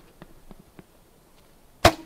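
A hunting bow being shot: one loud, sharp snap of the released string near the end, with a short low ring after it, preceded by faint ticks.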